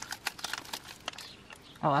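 Eating a jam donut from a paper wrapper: a run of quick, crisp clicks over about the first second, from the bite, chewing and the paper crinkling against the mouth.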